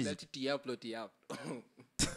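Quiet male speech: short, soft spoken phrases from a man talking into a handheld microphone.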